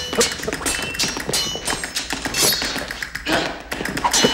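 Thin steel sword blades clashing in a fencing duel: a rapid run of sharp taps and clinks, some ringing briefly, mixed with heavier thuds.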